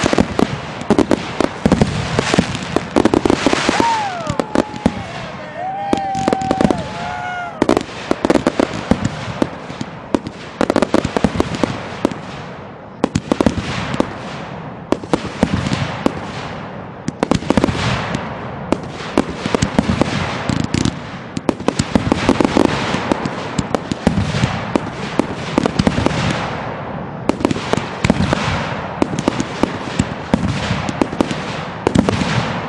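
Consumer firework cakes firing aerial shells in a dense, continuous barrage: rapid bursting reports one after another, with crackle running through.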